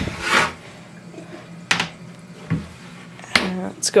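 Aquarium stand cabinet doors being shut: a handful of sharp knocks and clicks, with a duller thump about two and a half seconds in and two quick clicks near the end.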